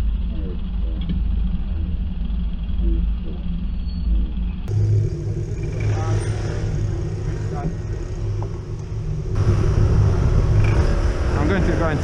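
Steady low traffic and road rumble picked up by a camera on a moving bicycle, with faint voices in the background. The sound changes abruptly twice, about halfway through and again later on.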